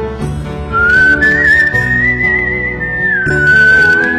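Whistled melody with vibrato over an instrumental music backing; the whistle enters just under a second in, climbs to a long high note, then steps down to a lower held note near the end.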